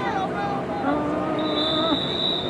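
Several people shouting and calling out over a football game, and about one and a half seconds in, a referee's whistle blown in one long steady blast.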